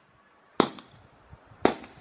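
Comet 'Space Hero' firework battery (cake) firing its tubes: two sharp launch pops about a second apart, each with a short fading tail, as coloured stars go up. There is no whistling: it is a star-shell battery, not the whistler battery the box promises.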